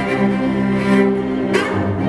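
Solo cello with string orchestra: sustained bowed notes over a low string bass line, with a couple of quick upward slides.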